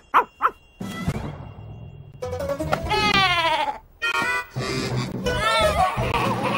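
Cartoon score music: three quick short notes, a noisy stretch, then a long falling sliding tone followed by wavering pitched notes.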